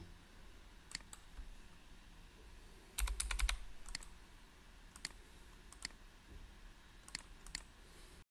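Faint clicks from a computer's mouse and keys. There are single clicks about a second in, then a quick run of several with a low thump around three seconds in, then single clicks every second or so.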